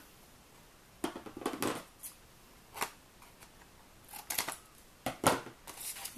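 Scissors snipping a corner off white cardstock, with handling rustles of the card and metal die: a few short, separate cuts, the loudest a little after five seconds in.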